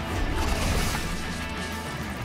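Sports broadcast closing theme music, sustained chords with a crash-like swell about half a second in.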